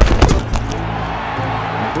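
A few sharp thumps in the first half second, then background music with steady held low notes.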